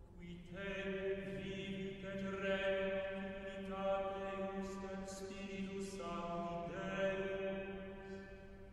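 Background music of slow, chant-like singing: long held notes that change pitch every second or two.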